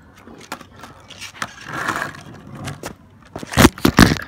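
Skateboard wheels rolling on tarmac with a few small clicks, then near the end a cluster of loud clacks as the board is popped and slams down on a frontside 180 attempt that is almost landed.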